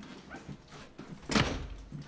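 A wooden front door being pushed shut, closing with a thud about one and a half seconds in, after a few light knocks and shuffles.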